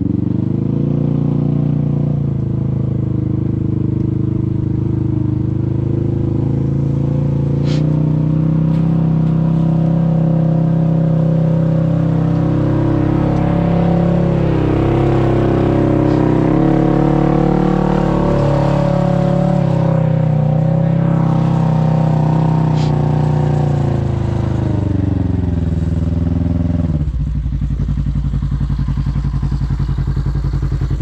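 Side-by-side UTV engine heard from on board, running under varying throttle with its pitch rising and falling as it crawls up a rutted dirt trail. About 27 seconds in it drops to a low, steady idle as the vehicle stops.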